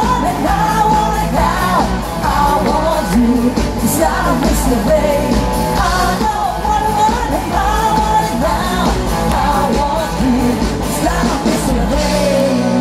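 Live rock band playing a song with sung vocals over drums, bass and electric guitar.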